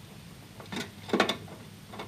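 A metal mounting bracket on a boiler's heat exchanger being worked loose by hand: a few short metallic clicks and knocks, bunched a little before and after the middle.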